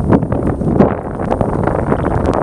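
Wind buffeting the microphone, a loud low rumble, with a few light clicks over it.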